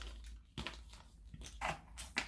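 Hands moving loose cardboard jigsaw puzzle pieces in their box: a few faint, short rustles and clicks.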